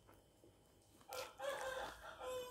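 A rooster crowing: one long call that begins about halfway in.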